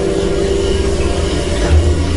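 Haunted-maze ambient soundtrack: a loud, steady low droning rumble with held tones, swelling briefly near the end.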